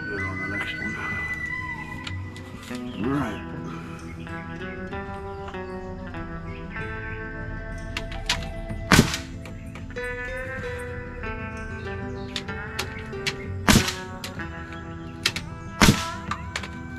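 Pneumatic framing nailer firing three single shots, sharp cracks about nine seconds in, about fourteen seconds in and right at the end, over steady background music.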